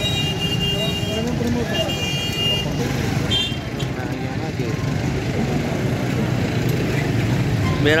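Busy street sound: motor scooters and traffic running under a murmur of people's voices, with a high vehicle horn sounding in short toots near the start and again about two and three and a half seconds in.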